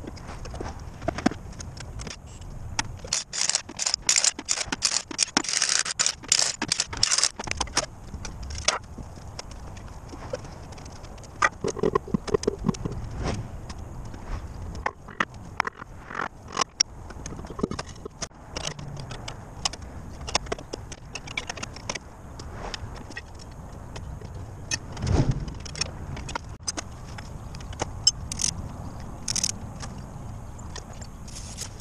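Metal hand tools and parts clinking, knocking and scraping during work on an LMTV truck's front wheel hub, as a run of short sharp clicks that is busiest in the first several seconds. A dull thud stands out about 25 seconds in.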